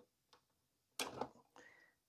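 One sharp click about a second in as a SATA data cable's connector is pulled off a 3.5-inch desktop hard drive, with a brief faint rustle after it; otherwise near silence.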